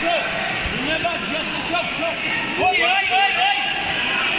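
Overlapping voices of coaches and spectators calling out across a busy sports hall, with louder shouts from a little past halfway.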